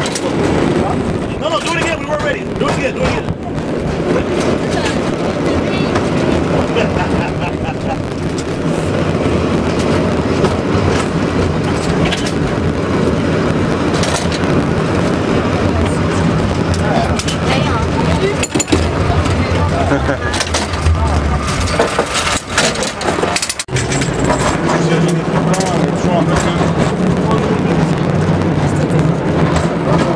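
San Francisco cable car running along its track: a continuous low rumble with scattered clanks from the car on its rails and cable, with passengers' voices mixed in.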